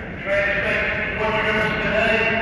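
R32 subway train approaching through the tunnel, its steel wheels and brakes giving a sustained high-pitched squeal of several tones over a low rumble. The tones shift about a second in, and crowd voices are mixed in.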